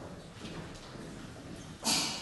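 Footsteps and small knocks on a wooden stage floor, in a reverberant hall. Near the end comes a sudden, louder clatter.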